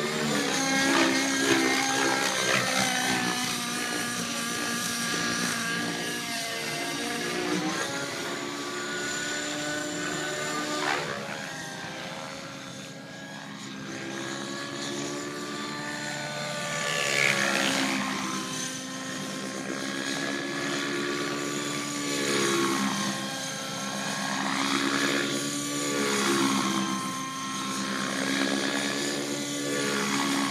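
Radio-controlled aerobatic model airplane flying, its motor and propeller running throughout. The pitch rises and falls as it passes and changes throttle.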